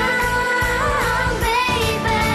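Pop song sung by young girls, with long held notes that glide to a new pitch about halfway through, over a full backing track.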